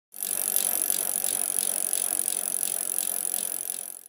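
Bicycle wheel spinning with a ticking rattle that pulses about three times a second. It cuts in just after the start and fades near the end.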